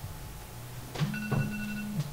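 Two soft clicks on a laptop as a presentation slide is advanced, with a faint steady electronic tone after them.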